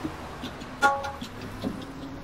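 Tabla being played with a few sparse strokes: a ringing, pitched stroke on the small treble drum (dayan) a little under a second in, and a deep stroke on the bass drum (bayan) with its pitch bending near the end.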